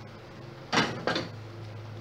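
A metal pan lid set down on the stove with two short knocks about a third of a second apart, a second or so in.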